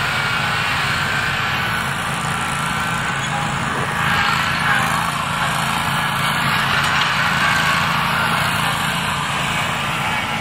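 Commercial stand-on lawn mower engine running steadily at working speed, getting a little louder about four seconds in.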